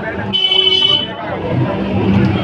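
A vehicle horn sounds one short toot, under a second long, about a third of a second in, over the chatter of people in a busy street.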